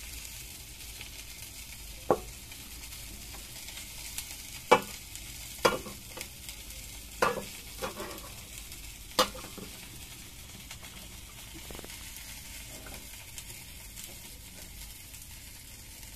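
Chopped leafy greens sizzling in a pan, a steady hiss, with a metal spatula knocking against the pan about six times in the first nine seconds as they are stirred.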